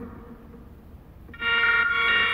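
An electronic instrument starts a steady held chord of several pitches abruptly about a second and a half in, after a short quiet gap: the backing music for a freestyle rap beginning.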